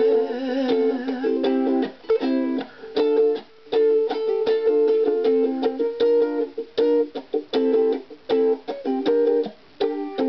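Ukulele strumming chords in a choppy reggae rhythm, short strums stopped dead with brief silent gaps between them.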